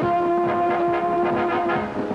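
Orchestral dance music led by brass, holding one long note that changes to a new phrase near the end.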